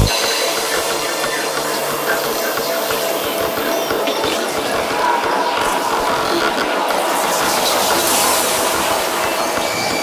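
Hi-tech darkpsy psytrance in a breakdown: the kick drum and rolling bassline drop out, leaving dense, fast-moving synth textures and hissing noise, with a bright noise swell building about eight seconds in.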